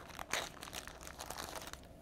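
A small clear plastic bag and the paper-wrapped sachets inside it crinkling and rustling as hands sort through them, in short light crackles.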